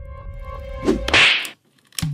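A low, droning music bed. About a second in, a loud, sharp swish sound effect cuts in and stops dead into a moment of silence.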